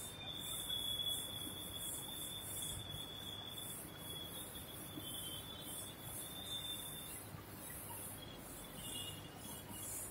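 Insects chirping in a steady high pulse, a few pulses a second, with a thin steady high whine that fades out about seven seconds in.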